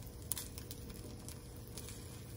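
Faint scraping and a few light clicks of a silicone spatula against a cast iron skillet as an egg omelet is worked and folded, over a steady low hum.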